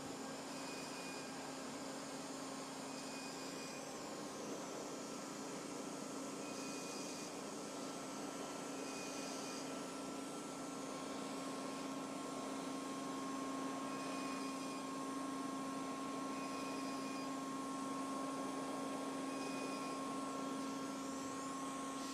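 Edge ONE fractional CO2 laser running during treatment: a steady machine hum with a couple of level tones, broken by short high beeps every couple of seconds as the laser fires, with a pause in the beeping midway.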